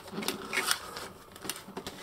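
Light plastic clicks and handling noise from a plastic Turtles of Grayskull Michelangelo action figure and its nunchuck accessories being turned and handled, a few scattered sharp clicks over a soft rustle.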